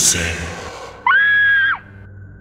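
A sharp noisy burst at the start that fades over about a second, then a high, shrill scream held at one pitch for under a second, starting about a second in.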